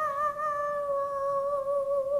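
Background music of a TV segment: a single wordless vocal note held steadily with a slight waver.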